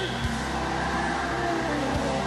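Church band music: held low organ-style chords over a bass, the chord changing about a quarter of a second in and again near the end.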